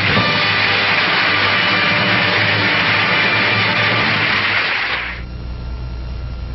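A studio audience applauding over a held orchestral chord. The applause stops suddenly about five seconds in, leaving a low hum.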